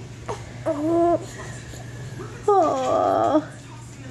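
A 10-week-old baby cooing: two drawn-out vowel sounds, the first short and level, the second longer, starting higher and falling in pitch, with a rough stretch in the middle.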